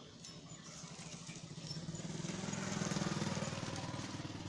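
A motor vehicle's engine passing close by, its rapid low pulsing growing louder to a peak about three seconds in and then starting to ease.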